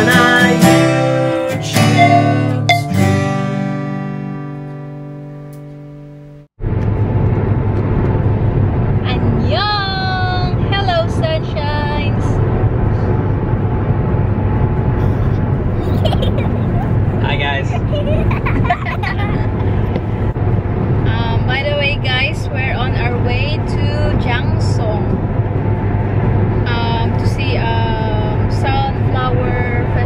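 An acoustic-guitar theme tune ends on a held chord that fades out over about six seconds. It cuts to a steady low hum of engine and road noise heard inside a moving car's cabin.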